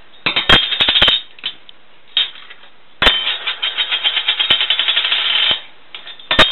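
A metal jar lid clattering on a countertop as a lorikeet pushes it with its beak: a few sharp clacks in the first second, then about three seconds in a fast, even rattle like a spinning coin settling, lasting about two and a half seconds and stopping suddenly.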